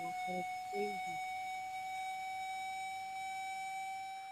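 A steady electronic test tone driving a salt-covered Chladni plate, creeping very slightly upward in pitch as the frequency is changed.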